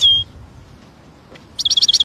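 Goldfinch calling: one short, clear high note at the start, then near the end a quick run of twittering chirps.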